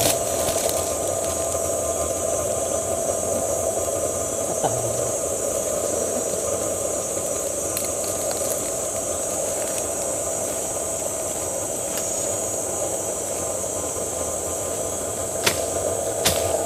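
A steady drone of tropical forest insects: a high, constant hiss over a lower steady hum, with a few faint clicks.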